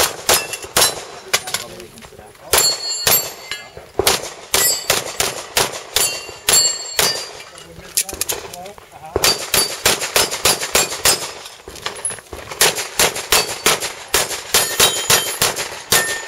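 Handgun fired in rapid strings of several shots a second, with short pauses between strings and a longer lull about halfway through. Steel plate targets ring briefly after some of the hits.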